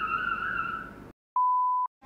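A high, slightly wavering whine that fades out about a second in. It is followed, in dead silence, by a short, steady, high-pitched bleep of the kind edited in as a censor tone.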